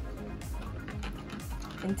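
Background music, with a silicone whisk beating a yeast, sugar and warm-water mixture in a plastic bowl, giving faint repeated clicks and scrapes.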